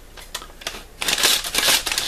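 Brown paper bag rustling and crinkling as its folded top is pulled open, with a few light clicks at first and loud, dense crackling paper noise from about a second in.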